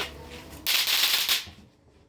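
A sharp click, then a loud hissing noise lasting under a second that cuts off abruptly.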